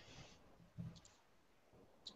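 Near silence over an online call, with a few faint, brief sounds about a second in.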